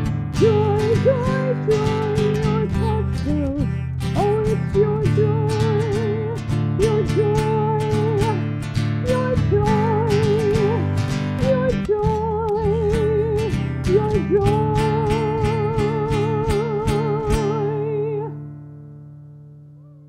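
A woman singing with vibrato over a strummed acoustic guitar; about 18 seconds in the song ends and the last strum rings out and fades.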